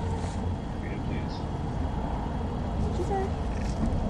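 Steady low rumble of outdoor parking-lot ambience, with a few faint, short bits of distant voices.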